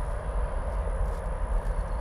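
Steady low rumble and hum of a running reef aquarium's pumps and water flow, with a faint steady high whine over it.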